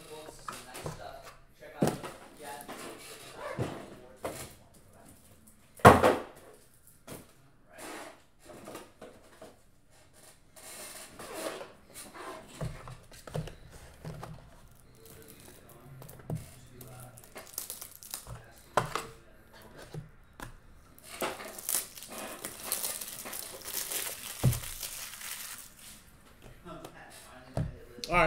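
Cardboard card boxes and plastic wrapping being handled on a table: scattered knocks and rustling, with a sharp knock about six seconds in. About three-quarters of the way through come a few seconds of crinkling wrapper noise.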